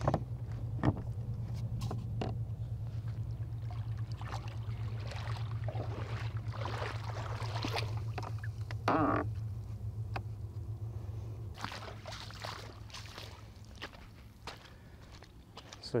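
Shallow water sloshing and splashing in irregular bursts as a person wades beside a kayak and handles its PVC pontoon floats, over a steady low hum that fades out about three-quarters of the way through.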